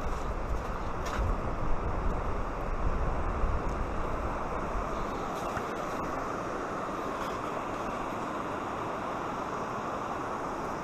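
Steady rush of a stream pouring over riffles and a low weir. Gusty wind rumbles on the microphone during the first half, and then the rush of the stream goes on evenly.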